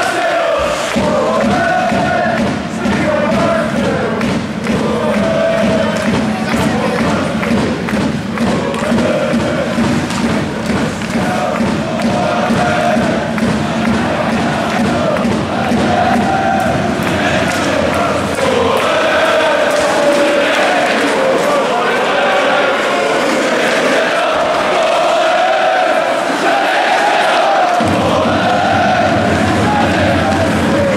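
Crowd of ice hockey fans chanting and singing in unison, steadily through the whole stretch, with the game going on.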